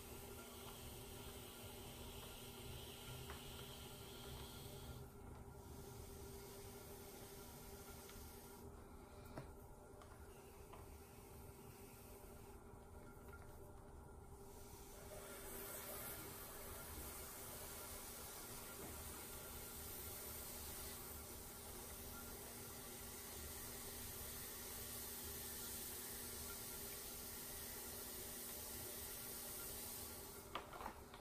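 Faint, steady hum of an electric potter's wheel spinning, with the soft hissing scrape of a metal trimming tool shaving ribbons of leather-hard clay from the foot of an upturned bowl.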